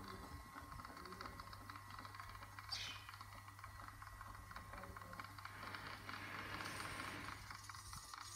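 Rope hoist lifting a bucket of dug earth out of a well pit: the hoisting gear clicks rapidly and evenly over a low steady hum, with a brief squeak about three seconds in.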